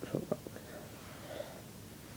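A few light clicks and knocks of plastic Bionicle pieces in the first half second as the figure is handled and let go, followed by a faint whisper-like murmur about one and a half seconds in.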